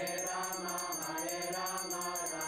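Group of voices singing a devotional chant, with a quick steady high percussion beat.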